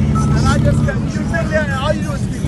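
A motorcycle engine running with a low, steady rumble under men talking.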